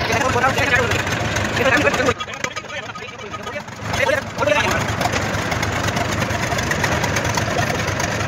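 Men's voices talking over a steady low engine-like hum, with a quieter lull in the talk a couple of seconds in.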